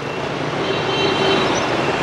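Busy city street traffic: motorbikes and other vehicles passing, a steady wash of engine and tyre noise.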